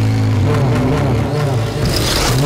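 A motorcycle engine running, with its note wavering up and down about halfway through.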